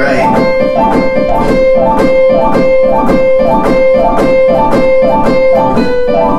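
Digital piano playing a fast, repetitive figure: a quick run of notes over a held note, the pattern coming round about twice a second.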